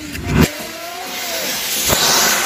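Firework rocket firing: a sharp bang about half a second in, then the hissing rush of the rocket's thrust, growing louder toward the end.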